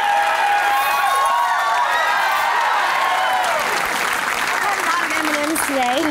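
Television studio audience cheering and applauding, many voices shouting and whooping over one another. A single voice stands out near the end.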